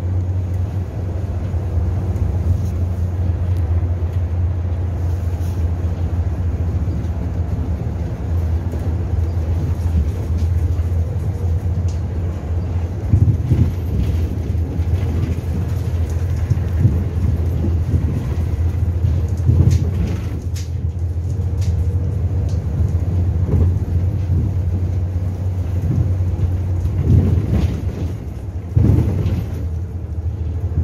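Inside a natural-gas city bus on the move: a steady low engine and road rumble, with a few short knocks and rattles partway through and near the end.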